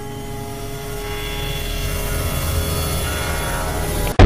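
A horror-style rising swell of noise building steadily in loudness over sustained, droning music chords.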